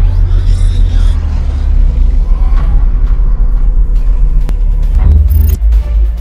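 Cinematic intro music over a heavy, steady low rumble, with a few sharp hits a little after four and five seconds in.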